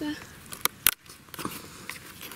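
A hand rummaging in dry soil and leaf litter, rustling, with two sharp clicks just under a second in.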